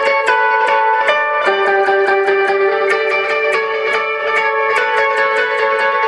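Gibson Explorer electric guitar played through a Vox amp with echo, picking a repeating melodic part at about two to three notes a second. Each note rings on and overlaps the next over a steady held note.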